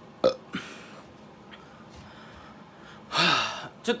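A man's vocal gag noises: two quick, sharp mouth sounds near the start, then a louder breathy vocal noise about three seconds in lasting about half a second.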